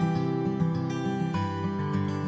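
Background music: an acoustic guitar strumming chords, changing chord about one and a half seconds in.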